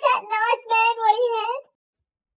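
A man's high-pitched wailing voice, drawn out and wavering in pitch, broken into a few sobbing-like pulls; it stops about a second and a half in.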